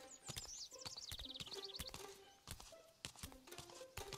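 Cartoon footsteps, a run of light clicks, over quiet background music, with a bird twittering in the first couple of seconds.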